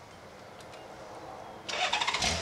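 A three-wheeled touring motorcycle being started: a couple of faint clicks, then about 1.7 s in the starter cranks the engine with a sudden loud whirring as it begins to catch.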